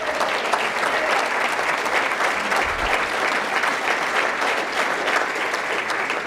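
Audience in a banquet hall applauding steadily in response to a line in a speech.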